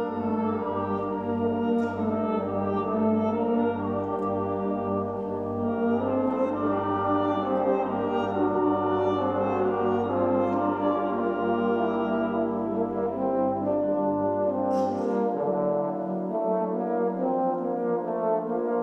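Youth brass band playing slow, sustained music, the bass section holding a long low note under the melody until about fifteen seconds in, when a single percussion crash sounds.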